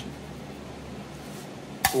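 A single sharp clink near the end as an aluminium soda can knocks against a drilled pine board, over the steady low hum of shop fans.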